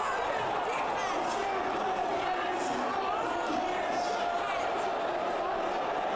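Indistinct chatter of a large indoor crowd, many voices overlapping at a steady level.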